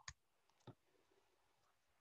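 Near silence, broken by two faint short clicks about half a second apart.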